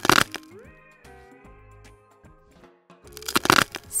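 Hook-and-loop joints of a wooden toy banana tearing apart as a toy knife cuts it, a crackly rip right at the start and another, longer one about three seconds in.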